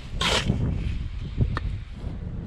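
Steel bricklaying trowel scraping wet mortar: one quick rasping scrape shortly after the start and a shorter one later, over a low rumble of handling.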